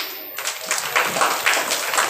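Applause: a group of people clapping, beginning about half a second in after a child's singing stops.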